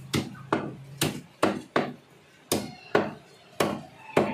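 Chicken being chopped with a heavy knife or cleaver on a cutting block: about eight sharp chops, roughly two a second, with a brief pause just after two seconds in.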